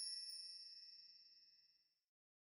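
The dying tail of a logo intro music sting: a few high, bell-like chime tones ringing on together and fading away to nothing about a second and a half in.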